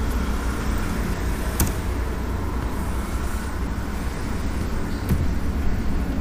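Steady low background rumble, with one sharp click about a second and a half in.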